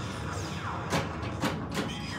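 Stern Meteor pinball machine playing electronic game sounds: steady synthesized tones with several falling pitch sweeps, and about three sharp clacks in the second half as the ball strikes the playfield targets.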